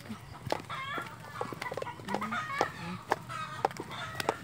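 Birds calling in many short, repeated curved calls, with scattered sharp clicks of footsteps on a dirt and stone path.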